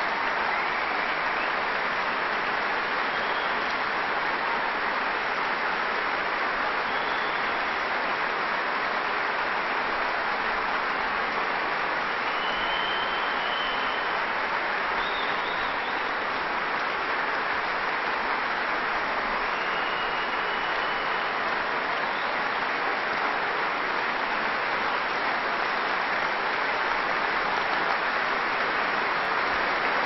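A large concert-hall audience applauding steadily and without let-up: a spontaneous ovation greeting a band as it takes the stage, before any announcement.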